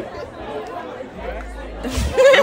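Faint talking and chatter in the background between spoken lines, with a low rumble starting a little past a second in and stopping just before the next words.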